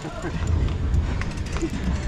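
Faint, broken talk from a small group of cyclists over a low, steady rumble, with a few brief clicks.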